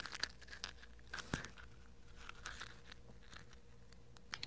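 Faint, scattered small clicks and crackles from a wooden toothpick worked between the teeth, heard over a low steady hum.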